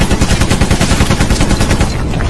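Rapid machine-gun fire sound effect, a fast even stream of shots at about seven a second that stops just before the end.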